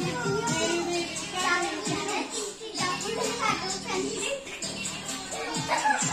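Children chattering and calling out over background music.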